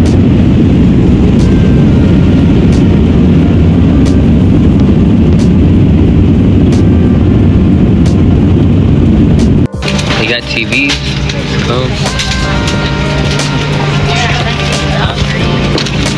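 Jet airliner taking off, heard from inside the cabin: a loud, steady engine and airframe rumble. It cuts off suddenly just under ten seconds in and gives way to music.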